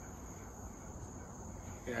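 Steady high-pitched insect chorus, a continuous trill with no break.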